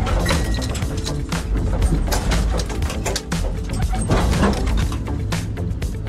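A car's drivetrain making a harsh, rapid mechanical clattering as the gear lever is worked, the kind of noise that signals costly damage. Background music plays under it.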